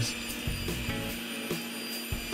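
Background music over a table saw with a glue-line rip blade running steadily, with dust extraction, as a board is ripped to width.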